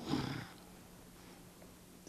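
A man's short, low voiced murmur in the first half-second, then quiet room tone with a faint steady hum.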